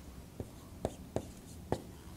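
Marker writing on a whiteboard: four short, sharp strokes, about half a second apart.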